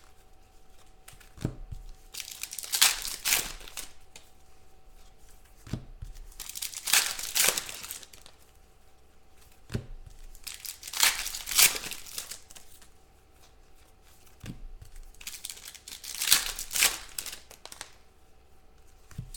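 Foil packs of 2016 Panini Contenders football cards being torn open and crinkled by hand. There are four bursts of tearing and crinkling a few seconds apart, each starting with a short tap.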